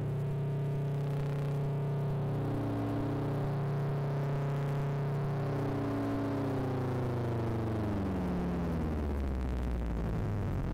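Homemade modular synthesizer playing a low sustained drone of several steady tones, an upper tone wavering up and down. Over the second half the tones slide downward in pitch.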